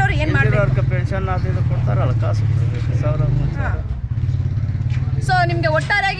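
A motor vehicle engine running nearby, a steady low rumble that eases off near the end, under soft talking voices.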